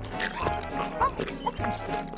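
Cartoon soundtrack: background music with a character's short, high squeaky cries that rise in pitch, twice near the middle.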